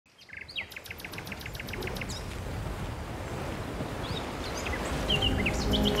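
Birds chirping in quick, evenly spaced trills, in two runs near the start and near the end, over a wash of outdoor noise that grows steadily louder. Music notes come in near the end.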